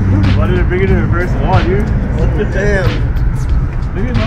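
A man talking over the steady low drone of street traffic.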